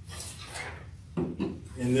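A rubbing, rustling noise close to the microphone for about a second, then a man's voice starts.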